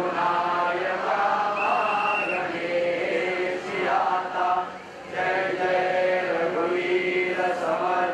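A group of voices chanting a Hindu devotional aarti in unison, with long held sung notes and a brief pause about five seconds in.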